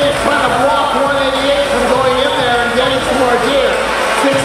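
A man's voice over an arena public-address system, with background music and the hubbub of a large hall.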